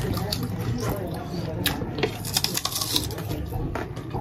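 Close-up chewing and wet mouth clicks of people eating Burmese tea leaf salad, with many small sharp clicks scattered throughout.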